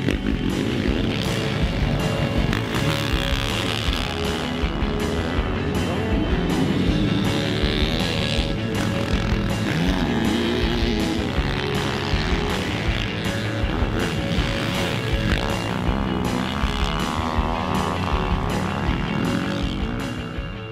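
Background rock music with a steady beat, mixed with a 449cc single-cylinder four-stroke engine of a Yamaha YZ450F motocross bike revving up and down as it is ridden.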